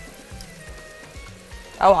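Quiet sizzling of chopped tomatoes and tomato paste frying in oil in a pan, under faint background music. A voice starts near the end.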